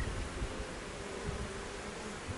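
Honeybees buzzing around an open hive as a frame covered in bees is lifted out, a steady hum.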